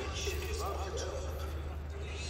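A person's voice speaking in the background, over a steady low rumble.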